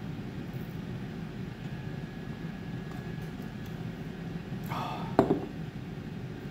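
A man takes a long drink of beer from a glass over a steady low room hum. Near the end comes a short voiced exhale that ends in a sharp lip smack.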